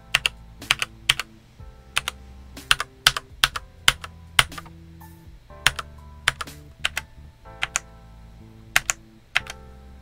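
Keystrokes on a Redragon K596 Vishnu TKL mechanical keyboard fitted with Outemu Red linear switches: single keys pressed in an irregular run of sharp clacks, a few a second with short pauses. Soft background music plays under them.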